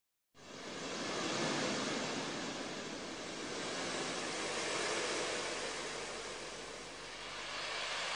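A steady rushing noise that fades in about a third of a second in and swells and eases slowly, with no tone or rhythm in it.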